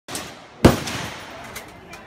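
A single rifle shot from an M16-style rifle, a sharp crack about two-thirds of a second in, followed by a ringing echo that dies away.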